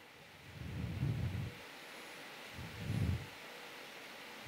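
Quiet room tone with a faint steady hiss, broken twice by soft low puffs on the handheld microphone, the first about half a second in and the second near three seconds.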